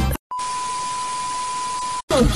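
A song cuts off abruptly, and after a brief silence a steady hiss of static comes in with a single steady high-pitched beep tone over it, like a test tone or a dead-channel signal used as a transition sound effect.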